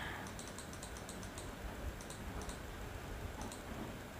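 Faint, irregular clicking of a computer keyboard, a few quick clicks at a time, over low background noise.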